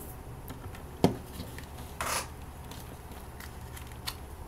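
Handling sounds of a smartphone in its case being fitted into a plastic car dock: one sharp plastic click about a second in, then a brief scraping rustle around two seconds, with a few faint ticks, over a steady low hum.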